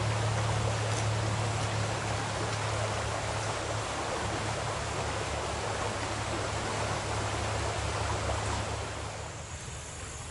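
Shallow creek water running over a gravel riffle: a steady rushing, with a steady low hum underneath. It softens a little near the end.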